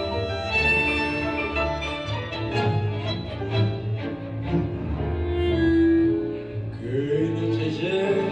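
Orchestra with violins, cellos and piano playing the instrumental introduction to a tango.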